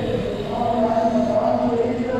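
A man's voice chanting Islamic religious recitation in long, drawn-out notes that step from pitch to pitch.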